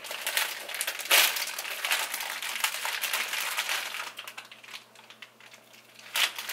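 Plastic candy-bag wrapper crinkling and rustling as it is handled and opened, loudest about a second in and dying away after about four seconds.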